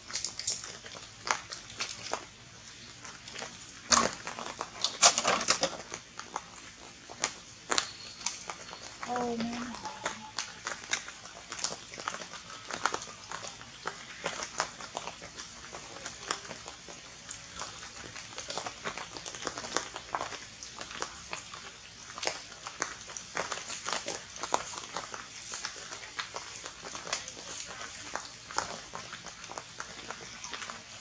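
Scattered clicks and taps as a young macaque handles a tin can on wet ground, with a few louder knocks about four to six seconds in. A brief low voice sounds once about nine seconds in.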